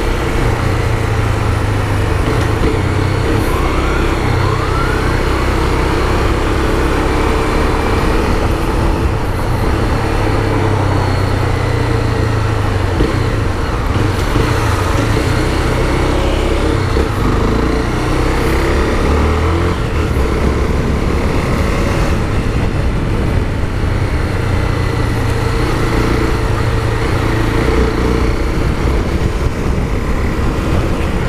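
Honda CB 300's single-cylinder engine running steadily while the bike is ridden, with heavy wind rush on the microphone.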